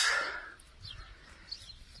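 Quiet outdoor ambience: a soft rushing noise that fades out in the first half second, then a few faint high chirps from birds.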